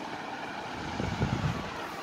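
Steady background noise with no distinct event, a little stronger and more uneven about a second in.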